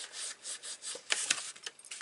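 Cardstock being creased flat with fingers and a bone folder: short, irregular rubbing and scraping strokes of paper on paper and on the mat.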